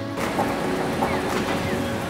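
Steady rumble and hiss of train station background noise, with no distinct event standing out.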